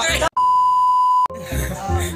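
A single steady 1 kHz bleep tone lasting about a second, edited into the soundtrack, starting and stopping abruptly with the other audio cut out beneath it, like a censor bleep laid over a word.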